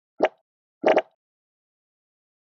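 Channel intro sound effect: a short sudden blip, then a quick double blip about two-thirds of a second later.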